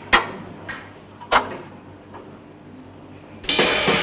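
Sharp mechanical clicks and clunks from a jukebox's selector mechanism, two loud ones and a couple of fainter ones. Near the end a Motown soul record starts loudly, drums first.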